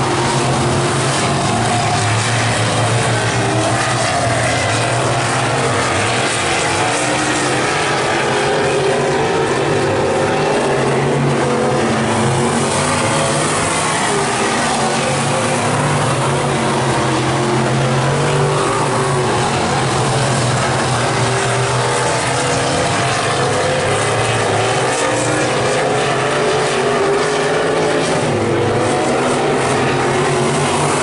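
A field of dirt-track race cars running laps together, several engines heard at once with their pitch rising and falling as the cars circle the oval.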